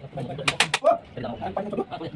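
A hammer striking the wooden shuttering plank, three quick blows about half a second in, then a pause.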